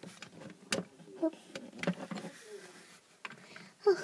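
A few light, separate clicks and taps of plastic toys being handled on a toy castle playset, as a doll is moved about.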